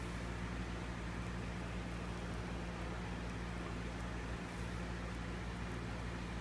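A steady low hum with a hiss over it. No handling sound stands out above it.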